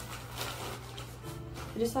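Plastic mailer bag crinkling as it is handled and opened, with soft background music coming in about halfway through.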